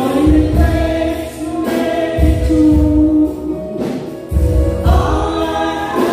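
Gospel song sung by several voices into microphones, with a bass beat pulsing underneath.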